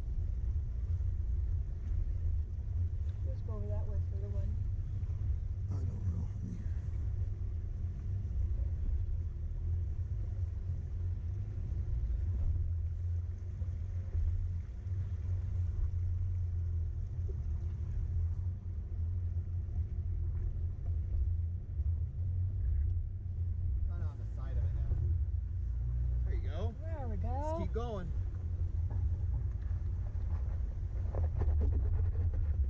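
Steady low rumble of a four-wheel-drive vehicle crawling over a rough, rocky trail, heard from inside the cab. Faint voices come in about four seconds in and again near the end.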